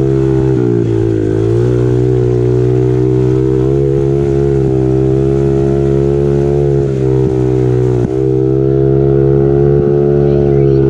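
Small four-stroke peewee dirt bike engine running under throttle at a fairly steady pitch. It dips briefly about a second in and again near 8 seconds.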